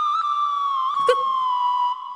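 A single sustained electronic tone, theremin-like, gliding slowly down in pitch: a mystery sting in the background score.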